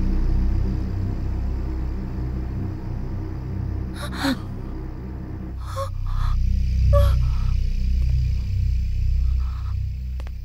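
Tense film background score: a low, sustained drone whose upper layer drops out about halfway through, with a few short breath-like gasps over it.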